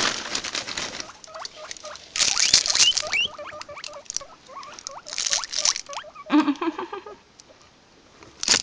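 Guinea pigs moving through wood-shaving bedding, rustling in three short bursts, with many short rising squeaks between them. A brief, lower call comes about six seconds in.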